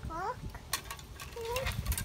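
A toddler's short high-pitched vocal sounds: a quick rising call just after the start and a brief held one about a second and a half in, with a single sharp click between them, over a low rumble.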